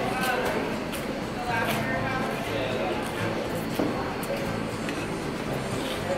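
Indistinct background talking from other people in a bar, with a few short clicks.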